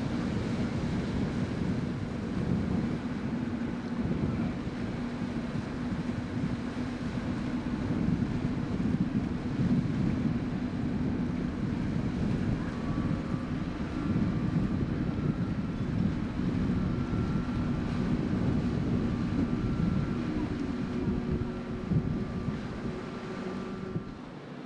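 Low, steady boat engine rumble with wind gusting on the microphone; a faint higher tone joins about halfway through.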